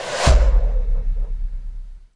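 Video transition sound effect: a rising whoosh that lands on a deep boom about a quarter second in. The boom rumbles on, fading, then stops abruptly.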